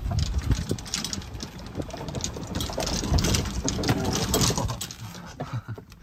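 Golf cart driving along a bumpy dirt track, its motor running steadily while the body and frame rattle and knock over the ruts. It eases off in the last second or so as the cart slows.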